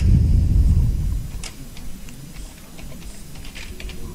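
A few scattered keystrokes on a computer keyboard as a short name is typed in. They follow a low rumble in the first second, the loudest sound here.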